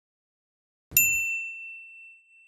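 A single bright ding about a second in, with a short low thump at its onset, ringing on and slowly fading: a sound effect for the company's logo reveal.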